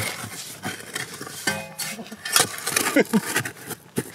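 A digging tool scraping and clinking against soil and stones in a hole, a run of short sharp scrapes, with a few brief voice sounds in between.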